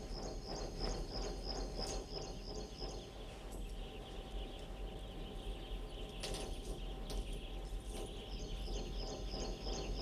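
Faint background ambience of regular high-pitched chirping, about three to four chirps a second, which fades out after about three seconds and returns near the end, over a steady hiss and low hum.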